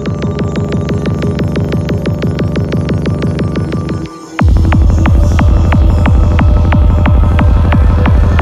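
Psytrance track: a rapid, even synth pulse that drops out for a moment about four seconds in, then comes back louder with a heavy kick and rolling bass.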